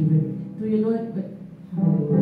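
A woman singing a slow gospel song into a handheld microphone, holding long sung notes; one phrase fades and a new one begins strongly near the end.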